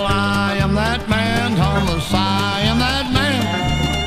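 Bluegrass band playing an instrumental break: a lead line that slides up and down between notes over steady bass notes about two a second.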